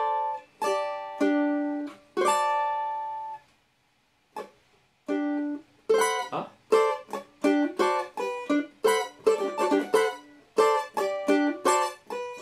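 Cavaquinho strummed: a few single chords left to ring over the first three seconds, a short pause, then from about six seconds a quick, rhythmic down-and-up strumming pattern.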